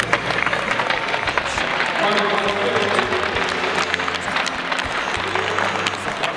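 Audience applauding: a dense, steady run of hand claps.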